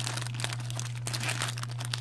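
Thin clear plastic bag crinkling as it is handled, a quick run of small crackles and clicks.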